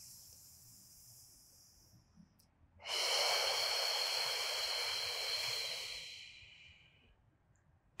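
A woman's deliberate breathing: a faint inhale through the nose, then, about three seconds in, a long, audible exhale through the mouth that fades away over several seconds. This is the exhale phase of a Pilates breathing exercise, drawing the abdominals in as the air is pushed out.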